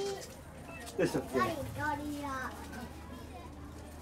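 Voices of onlookers talking, children among them, with a few raised exclamations about a second in.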